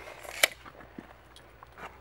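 Steel tape measure being retracted: the blade rushes back and snaps into its case with one sharp click about half a second in, followed by a few faint clicks.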